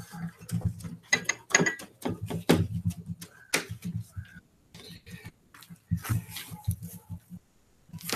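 Gloved hands rubbing salt into a raw duck's skin on a metal sheet pan: scattered light taps, scrapes and rustles, over a low steady hum.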